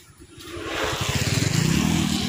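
Motorcycle approaching on a wet road, its engine hum and tyre hiss growing steadily louder.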